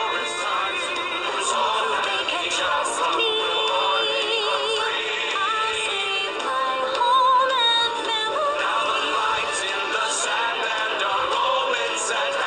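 A song: a voice singing over a dense music backing, with a few wavering held notes.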